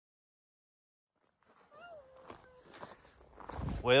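Silence, then from about a second and a half in, faint outdoor knocks like footsteps and one short high call that dips slightly in pitch. A man's voice starts near the end.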